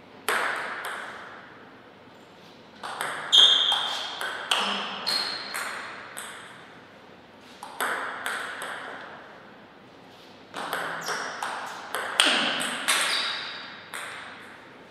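Table tennis ball being hit back and forth with paddles and bouncing on the table in two short rallies: quick runs of sharp, ringing clicks, with pauses of a few seconds between them.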